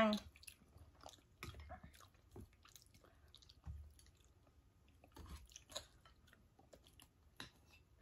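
Faint chewing and eating sounds: people chewing noodles and shredded green mango salad, with scattered small clicks and soft mouth noises at irregular moments.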